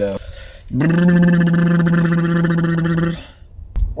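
A single low, steady droning tone with many overtones, held on one pitch for about two and a half seconds, starting under a second in and cutting off.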